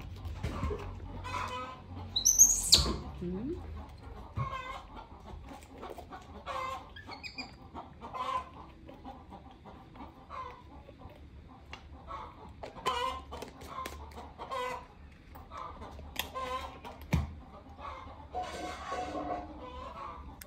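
Short animal calls repeated about once a second, with one loud, high-pitched squeal about two and a half seconds in.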